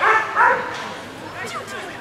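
Poodle barking: two loud, sharp barks in quick succession, then fainter short yips about a second and a half in.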